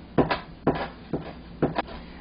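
Chinese cleaver chopping peanuts on a cutting board: about seven uneven knocks of the blade striking the board.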